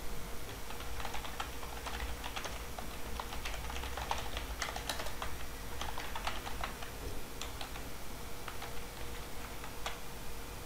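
Typing on a computer keyboard: a run of quick, irregular key clicks, densest in the first two-thirds and thinning out near the end, over a faint steady hum.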